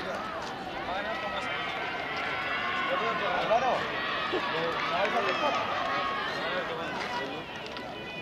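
Several spectators shouting and cheering on sprinters in a 100 m race, many voices overlapping, with high calls rising and falling in pitch.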